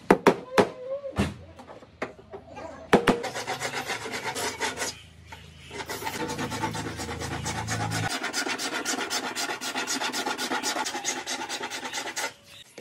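A hand tool working the damaged rear door panel of a Mahindra Thar: a few sharp taps in the first three seconds, then a fast, even run of scratchy strokes, many a second.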